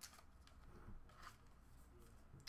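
Near silence, with a faint click at the start and a soft rustle about a second in as a trading card is handled and set down.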